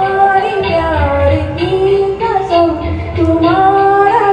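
A woman singing a melody into a hand-held microphone over a PA, with recorded accompaniment and its beat underneath; she slides between long held notes.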